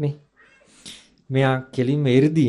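A man's voice speaking Sinhala into a microphone. It pauses for about a second, with a faint breath, then resumes on a drawn-out vowel.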